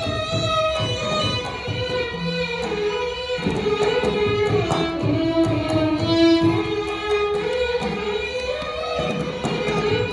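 Carnatic violins playing a melody together in raga Amritavarshini, the notes sliding and bending between pitches, over a mridangam keeping up a stream of drum strokes.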